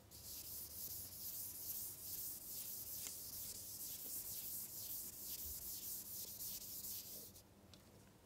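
A chalkboard being wiped with a duster in quick back-and-forth strokes, a dry rubbing hiss that stops suddenly shortly before the end.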